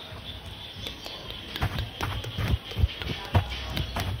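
Brush strokes on a microphone: bristles swept and dabbed over the mic grille in irregular scratchy strokes with soft low thumps, growing denser and louder about a second and a half in.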